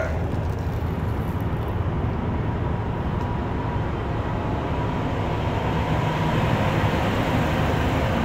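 A steady hissing, splashing noise on the metal trailer roof overhead, heard from inside the trailer, that sounds like someone urinating up there; its cause is unknown. A low steady hum runs under it.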